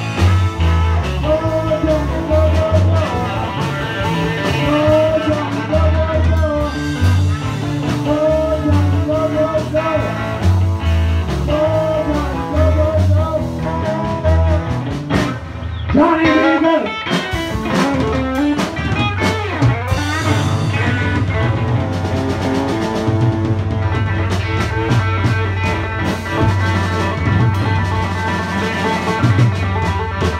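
Live band playing rock music on electric guitar, bass guitar, drum kit and saxophone. A wavering melody line runs through the first half, and it turns to sliding, bending notes about halfway through.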